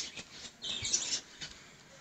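Quiet outdoor background with a short, high bird chirp about half a second in.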